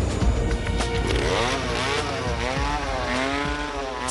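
Small petrol engine of a portable rock-core drill running as it cores into old lava rock, its pitch rising and falling several times as the engine revs and bogs under load. Background music plays underneath.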